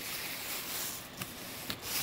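Clear plastic bag rustling as it is handled and pulled off a cardboard shipping box, with two light knocks in the second half.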